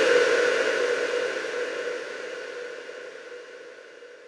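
A white-noise effect sample in an electronic techno track, the drums gone, fading out steadily with a few faint held tones under it.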